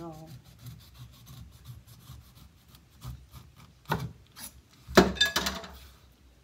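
A large kitchen knife sawing down through the rough skin of a whole pineapple on a wooden cutting board, in quick rasping strokes. Sharper knocks come near four seconds, and the loudest, a cluster of knocks and clatter about five seconds in, comes as the slab of skin comes free.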